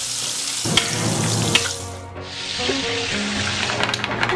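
Food sizzling in the kitchen, a steady hiss that breaks and changes about two seconds in, with a couple of sharp clicks, over background music.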